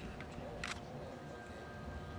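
A single short camera shutter click about two-thirds of a second in, over faint outdoor background noise.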